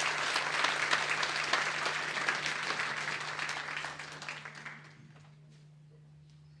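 Audience applauding at the end of a song, the clapping fading away about five seconds in.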